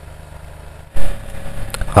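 Low, steady hum of a submerged aquarium power filter running. About a second in, a sudden loud rush of sound cuts in and carries on to the end, with a few sharp clicks.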